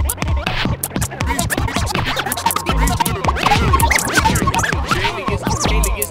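Hip-hop instrumental beat with DJ turntable scratching over it: short swooping scratched sounds on top of deep kick drums and hi-hats.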